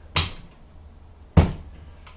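Two sharp clunks about a second and a quarter apart, the second heavier, as the open dishwasher door is handled.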